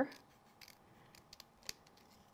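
Small craft snips cutting through thin black card: a few faint, sharp snips, the clearest near the end.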